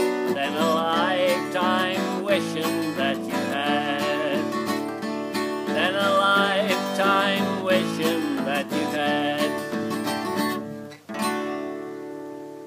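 A man singing a country song to his own strummed acoustic guitar. About ten and a half seconds in, the singing and playing break off, then a last chord is strummed and left to ring, fading away.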